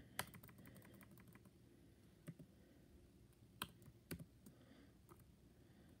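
Computer keyboard keys tapped faintly. A quick run of key presses about a second long near the start, deleting text, is followed by a few single taps spaced out.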